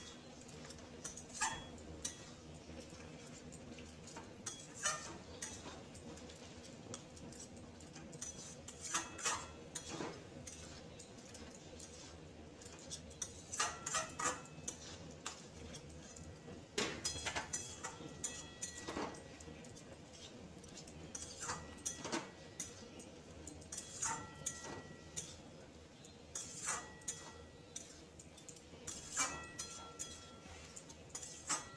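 Spatula stirring food in a metal kadai, with irregular clinks, knocks and scrapes against the pan, coming in clusters, some ringing briefly.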